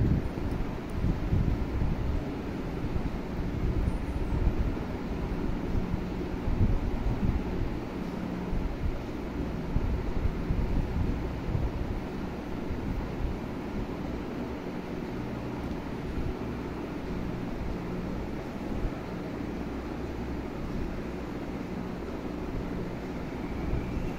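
Steady low rumble of moving air on the phone's microphone, with a faint steady hum underneath.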